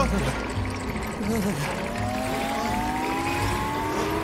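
Cartoon soundtrack: background music under a slow, steadily rising whistle-like glide that begins about a second and a half in and keeps climbing.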